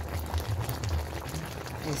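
Broth simmering and bubbling in a pot around a whole chicken and small potatoes, as a spoonful of the cooking liquid is poured over the chicken.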